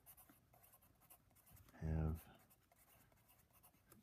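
Pencil writing on a paper worksheet: faint, irregular scratching strokes as letters are written out.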